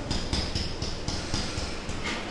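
Pen strokes on an interactive whiteboard: a run of short taps and scratches, several a second, over a steady low hum.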